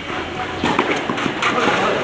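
A few sharp knocks of a tennis ball off rackets and the clay court during a doubles rally, with people's voices over the second half.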